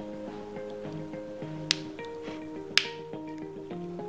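Two sharp clicks about a second apart as a 9-volt battery snap clip is pressed onto the battery's terminals, over background music.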